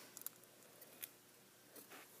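Near silence: room tone with a few faint clicks about a quarter second in and again about a second in, from handling.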